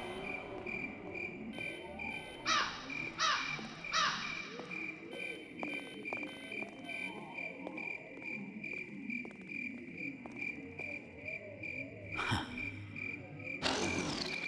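Crickets chirping in a steady, even pulse over soft background music, with a few quick falling swishes a few seconds in and again near the end.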